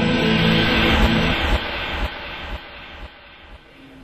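Intro music ending in a broad whooshing swell, like a jet passing, that fades away over about three seconds, with a few low thuds under it.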